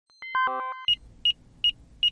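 Electronic news-intro sound effect: a quick run of falling synthesized notes, then short high beeps repeating nearly three times a second over a low hum.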